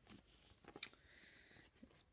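Faint handling of a photo card being pushed into a clear plastic pocket-page sleeve: a sharp click a little under a second in, then a brief soft rustle of the plastic.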